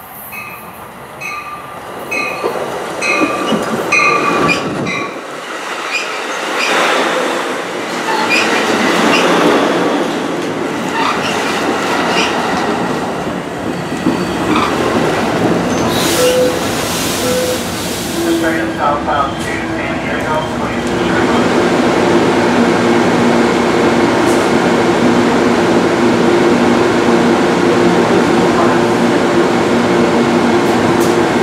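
Amtrak Pacific Surfliner train pulling into a station. A bell rings about twice a second at first, then the bi-level cars roll past with wheel and brake noise and a hiss. Near the end the diesel locomotive comes alongside, its engine running steadily.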